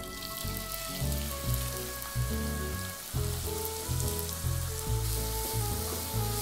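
Chopped onions frying in hot mustard oil in a kadai: a steady sizzle that starts as soon as they hit the oil.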